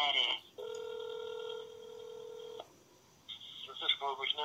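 Telephone ringback tone heard through a phone's speaker: one steady low tone lasting about two seconds, starting about half a second in. It signals the line ringing at the other end while the call waits to be answered, just after a recorded announcement ends.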